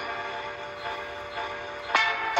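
Hip-hop dance music: a held chord sustains quietly, then a sharp hit lands near the end.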